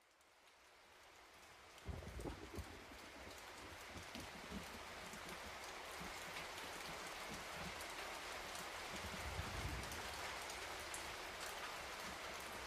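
Steady rain falling, fading in from silence at the start, with low rumbles about two seconds in and again near ten seconds.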